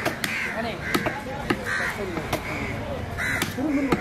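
Crows cawing repeatedly, short harsh calls about once a second, over several sharp knocks of a large knife striking fish on a wooden chopping block.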